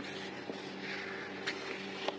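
Glossy paper sticker sheets being handled and shuffled: a soft rustle about a second in and one sharp tap or flick near the end, over a steady low electrical hum.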